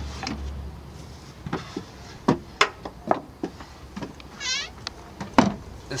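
Plywood panels of a van's built-in bench and fold-down counter being moved and set into place: a series of sharp wooden knocks and clacks, with a brief high squeak about four and a half seconds in.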